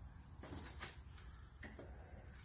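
Quiet workshop with a few faint light clicks of an aluminium VW engine case half being lowered onto its mating half.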